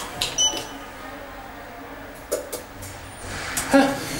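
A lift car's floor button pressed, with a click and a short high electronic beep acknowledging the call. A low steady hum follows.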